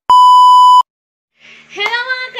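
A single loud, steady electronic beep, the test tone that goes with TV colour bars. It lasts just under a second and cuts off sharply.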